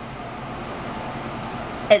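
Steady, even noise of electric fans and an air conditioner running.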